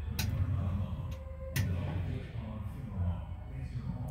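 Two sharp clicks about a second and a half apart over a low, steady rumble.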